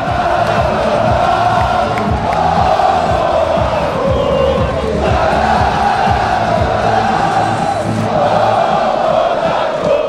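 A group of footballers chanting and singing together in celebration, in one loud, sustained melodic chant, with a stadium crowd behind.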